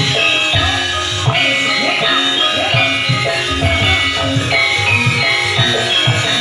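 A large Javanese gamelan ensemble playing: many bronze metallophones sound overlapping melodic notes over regular low drum strokes.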